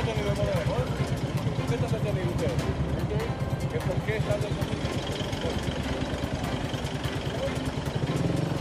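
Pickup truck engine running at idle, a rapid, even low pulsing, with indistinct voices talking over it.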